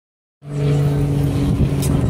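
Swing carousel's drive machinery running with a steady, even hum made of several constant tones, starting about half a second in.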